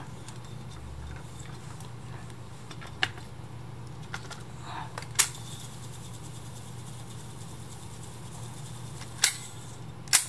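Reel-to-reel tape deck running with a steady low hum, with a few sharp mechanical clicks about three, five and nine seconds in.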